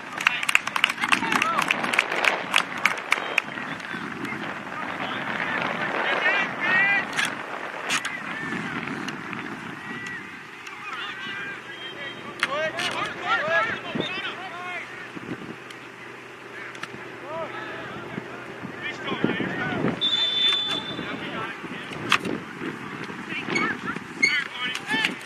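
Shouting voices of players and coaches across a soccer field, heard from a distance, with scattered sharp knocks, thickest in the first few seconds and again near the end, and a brief high steady tone about twenty seconds in.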